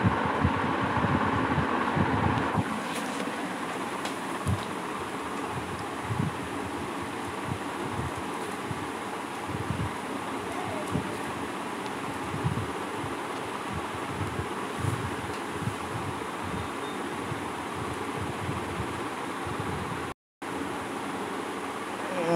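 Steady background hiss with faint scattered low knocks, cutting out for a moment near the end.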